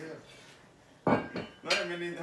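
Iron weight plates on a curl bar clanking sharply as the barbell is put down about a second in, with a short ringing tail.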